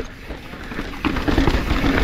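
Mountain bike rolling on a dirt trail: tyre noise on loose dirt with wind on the camera microphone, growing louder about a second in.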